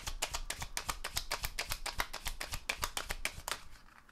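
A Golden Universal Tarot deck being hand-shuffled, the cards clicking against each other about ten times a second, stopping about three and a half seconds in.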